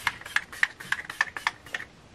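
Makeup setting spray pump-misted onto a face in rapid spritzes, about seven a second, each a short click and hiss, stopping just before the end.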